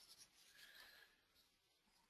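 Near silence, with only a faint hiss.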